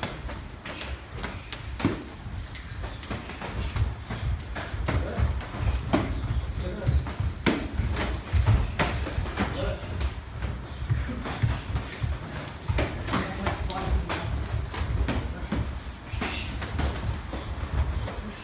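Full-contact karate sparring: irregular, rapid thuds and slaps of punches and kicks landing on bodies, with bare feet striking and shuffling on the floor, over a heavy, uneven low rumble.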